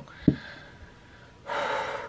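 A short sharp tap about a quarter second in, then a woman's sudden audible intake of breath, a gasp, starting about one and a half seconds in.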